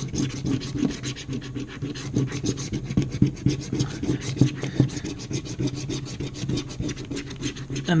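Scratch-off lottery ticket's coating being scraped off with a small red scratcher, in quick, rapid back-and-forth strokes.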